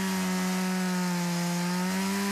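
Stihl MS 170 two-stroke chainsaw running at full throttle, cutting through a log. Its engine note holds steady and sags slightly in pitch as the chain bites into the wood.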